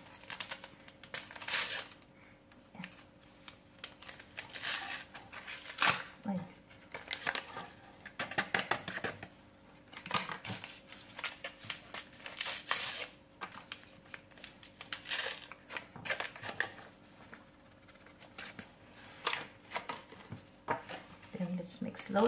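Packets of vanilla pudding powder crinkling and rustling in irregular bursts as they are torn open and shaken out over a pot.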